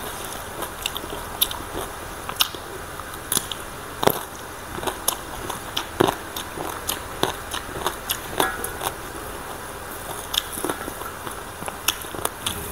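Close-miked crisp crunching and chewing of raw vegetables, a run of irregular sharp crunches with two louder bites about four and six seconds in.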